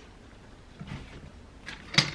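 Faint handling of a plastic laptop screen bezel being pried loose from the display, with a few small ticks and one sharp plastic click near the end.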